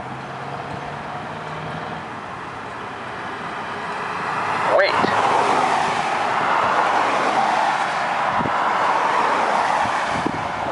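Pedestrian crossing push-button's speaker saying its recorded "Wait" message once, about five seconds in. It repeats every six seconds or so. Traffic noise from passing cars builds through the second half.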